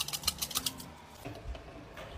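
Rapid rattling clicks, about a dozen a second, of a hard-boiled egg being shaken against a cup in a pot to crack its shell. The rattling stops a little under a second in, leaving faint handling sounds.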